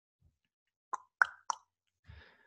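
Three short, sharp pops in quick succession, about a quarter second apart, the middle one loudest, in otherwise near silence.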